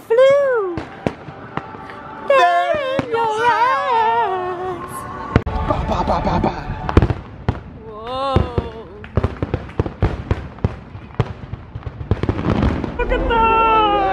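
Fireworks going off in a rapid run of sharp bangs and crackles from about five seconds in. A voice singing is heard at the start and again near the end.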